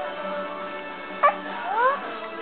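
Young infant letting out two short, high whimpers in the second half, the second a longer rising wail: the start of fussing that turns into crying. Steady background music runs underneath.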